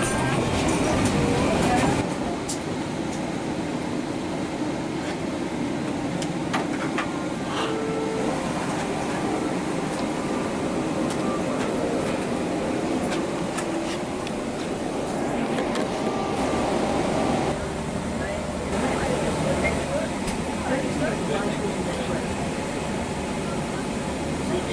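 Airliner cabin during boarding: indistinct chatter of passengers and crew over a steady background hum. The level drops a little about two seconds in.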